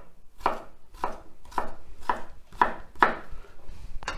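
Kitchen knife dicing a slice of raw potato on a wooden chopping board: a steady run of sharp knife strikes on the board, about two a second.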